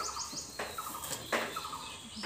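Birds calling: quick runs of short, high chirps repeating, with a lower rapid trill between them. Several brief rustling noises are mixed in as leafy fronds are handled against the roof edge.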